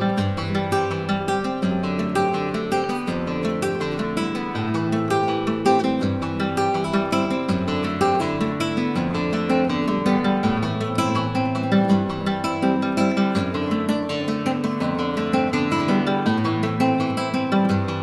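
Solo nylon-string classical guitar, a cedar-top Loriente 'Clarita', playing a continuous stream of quickly plucked notes.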